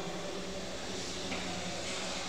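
Chalk scratching on a blackboard as words are written, with short strokes about a second in and near the end, over a steady low background hum.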